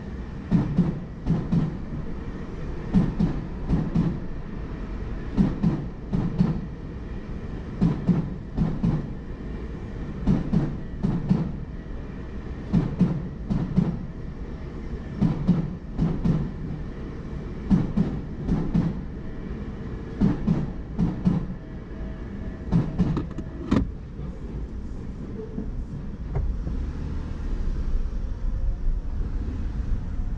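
Tobu Tojo Line commuter train passing slowly over a level crossing, its wheels thumping over the rail joints in pairs about every two and a half seconds, car after car. The thumps stop as the last car clears about 24 seconds in, leaving only a low steady rumble.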